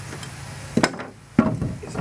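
Two sharp wooden knocks, a little over half a second apart, as the wooden clamping blocks and wedges around a boat stringer are worked loose.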